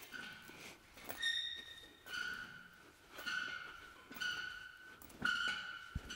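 Faint, high squeak from a swinging maize bag's chain and swivel, repeating about once a second with each swing of the bag. There is a single light click about a second in.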